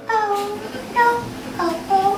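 A woman's voice singing a few short phrases alone, with the band stopped, each phrase sliding in pitch.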